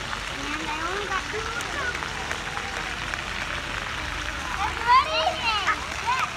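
Children's voices and calls over a steady wash of splashing water, with one louder high child's call about five seconds in.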